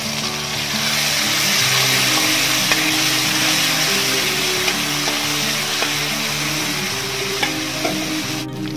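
Hot oil sizzling steadily as chopped aromatics and curry leaves fry in a metal pan, getting a little louder about a second in, with a few light ticks as they are stirred. Background music plays underneath.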